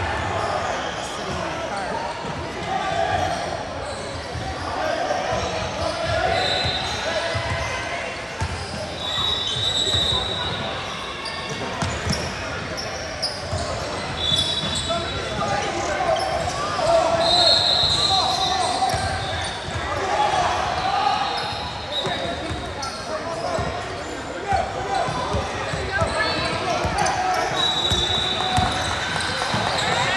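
Echoing gymnasium ambience: a murmur of many voices, basketballs bouncing on the hardwood floor, and a few short, high sneaker squeaks.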